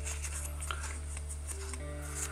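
Soft background music holding steady sustained notes, with a couple of faint light taps from a cardboard box being handled.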